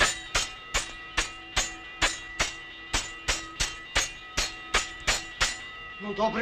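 Rapid, evenly spaced metallic clangs, about two and a half a second, with a ring that carries on between the strikes.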